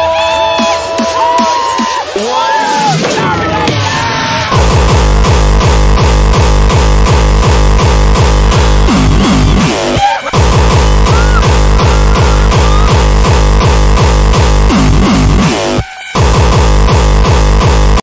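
Electronic dance music laid over the footage. A build-up of gliding synth sounds gives way, about four and a half seconds in, to a heavy, steady bass beat that drops out briefly twice.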